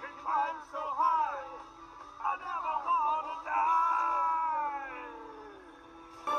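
A song from an animated film playing through a laptop speaker: voices singing and whooping over music, then a long held note that slides down in pitch and fades away near the end.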